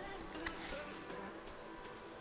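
Faint insects in the grass, a thin steady high-pitched chirring that holds on without a break.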